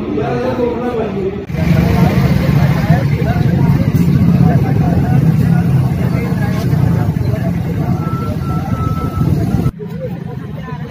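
Road traffic running past with a crowd of people talking over it, starting suddenly about a second and a half in after a short stretch of a man's speech.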